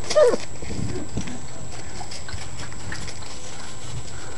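A five-week-old Great Bernese puppy gives one short whine that falls in pitch, right at the start, followed by a few fainter low sounds.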